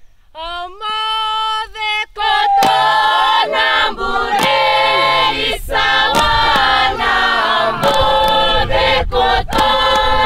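A traditional Fijian chant: a single voice opens with a held call, then about two seconds in the seated chorus joins in, many voices chanting together. Sharp percussive strikes punctuate the chant.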